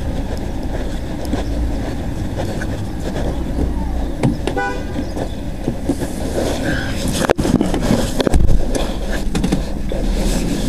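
Car cabin road and engine noise while driving on a city street, with a short car-horn toot about four and a half seconds in. Knocks and bumps from handling come near the end.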